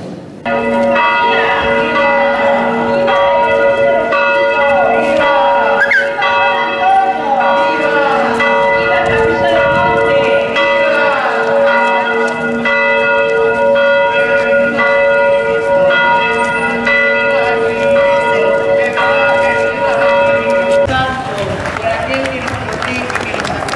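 Church bells pealing, several bells struck over and over so that their ringing overlaps in a steady wash, with voices faintly underneath. The ringing starts suddenly about half a second in and stops abruptly about a second before the end.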